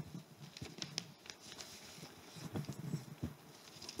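Quiet pause in a hall with faint rustling and a few light clicks and knocks of people moving and handling things.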